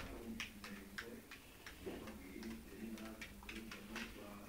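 A series of light, irregular clicks or taps, about three to four a second.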